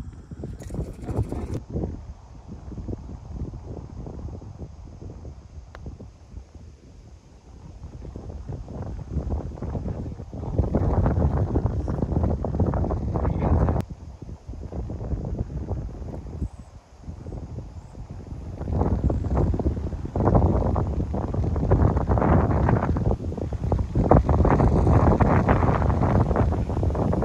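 Wind blowing across the microphone in gusts, a low noise that swells loudest from about ten to fourteen seconds in and again over the last seven seconds.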